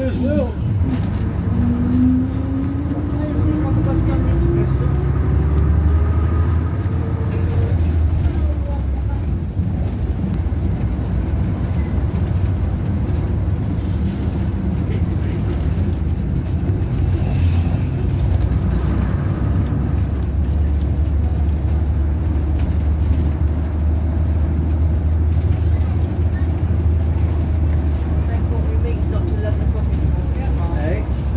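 Leyland Panther diesel single-deck bus heard from inside the saloon, its engine running under a steady low drone with road noise. About two seconds in, a whine rises steadily in pitch for several seconds as the bus picks up speed.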